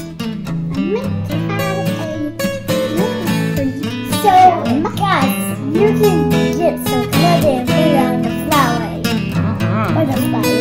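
Background music: a strummed acoustic guitar playing steady chords.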